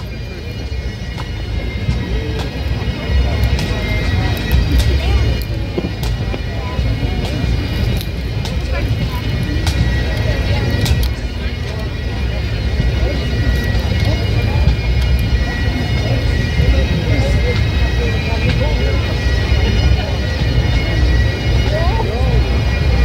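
Bagpipes sounding steady drone-like tones in the background, not a tune being played, under a constant low rumble of wind on the microphone, with faint crowd chatter.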